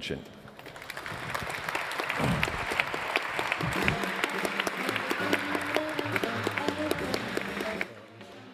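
Audience applauding at the close of a talk, swelling over the first couple of seconds, holding steady, then dying away just before the end.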